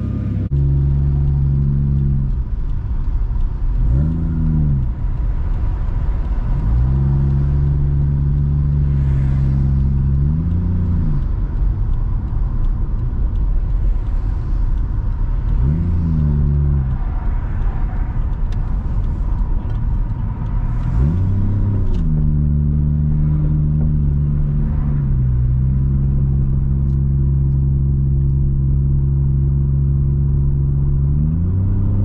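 A Toyota JZX100's turbocharged 1JZ-GTE VVTi straight-six engine pulling along at a steady drone, heard from inside the cabin while driving. Several times the pitch swells up briefly and drops back as the car accelerates and changes gear.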